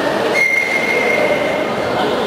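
A long, steady, high-pitched tone, stepping up slightly in pitch about a third of a second in, held over a busy hall hubbub.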